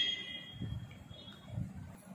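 A faint, steady high-pitched tone made of several pitches at once, lasting about a second, with soft low knocks as a small idol is picked up and handled in the hand.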